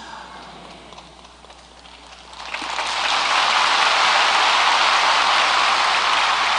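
Large congregation applauding, the clapping starting about two seconds in, swelling quickly and then holding steady and dense.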